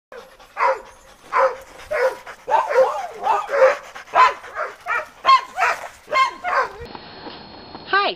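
Dogs barking, about two barks a second, stopping about seven seconds in.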